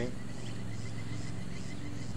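A steady low motor hum, with a faint, rapid high ticking over it.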